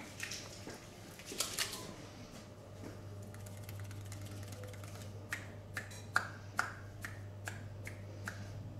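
A run of short, sharp clicks from a barber's fingers on a client's head during an ASMR head massage, about two a second in the second half, over a low steady hum.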